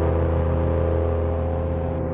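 One low note held steady and heavily distorted through iZotope Trash Lite, thick with buzzing overtones. The top of the sound dulls a little near the end as the plugin's Tilt control is turned down.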